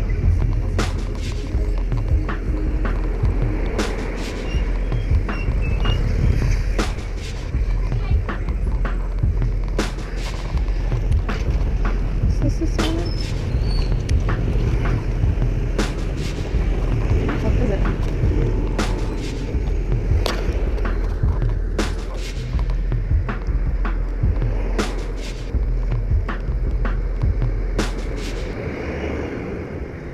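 Riding a bicycle along a city street: deep wind and road rumble with frequent clicks and knocks from the bike over bumps, and music and voices in the mix.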